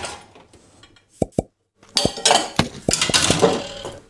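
Two sharp knocks, then a loud clatter of objects tumbling and crashing together, with clinks and rattles, as a chair and the things around it fall over.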